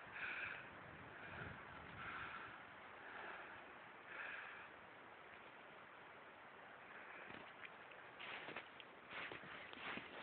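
Faint wind gusting through fir trees, swelling and easing like distant waves, with a few short clicks or crunches near the end.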